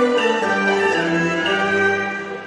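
Instrumental accompaniment to a Cantonese opera song, led by bowed strings playing a melody of held notes that step from pitch to pitch, with no voice over it.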